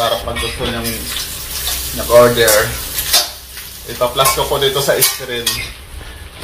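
Pork skin frying in hot oil in a wok, with a metal ladle clinking and scraping against the pan as the pieces are stirred. Bits of voice, perhaps laughter, come and go over it, the loudest about two seconds in.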